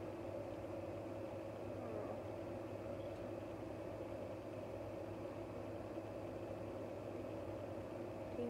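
A steady, unchanging background hum with no distinct events.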